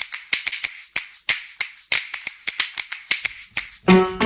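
Background music in a percussion-only passage: a steady beat of sharp, snap-like clicks with soft swishes between them. Right at the end, a keyboard melody comes in.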